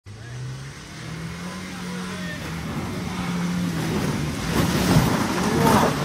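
Off-road SUV engine working hard on a steep climb, its pitch stepping up about a second in and getting loudest near the end, where a rush of noise joins it.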